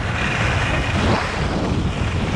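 Wind buffeting the camera microphone of a skier going downhill at speed, over the hiss of skis sliding on groomed snow; a steady rush that swells and eases.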